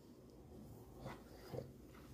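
Near silence: quiet room tone, with two faint soft rustles about a second in and half a second later.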